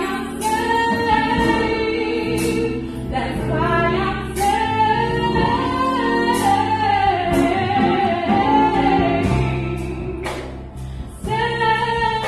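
Women's gospel vocal group singing, a lead voice over held backing harmonies, with a brief break in the singing about ten seconds in.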